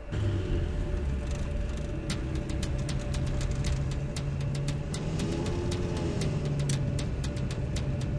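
Car engine running as the car drives along: a steady low rumble that starts abruptly. Quick, irregular sharp ticks join it about two seconds in.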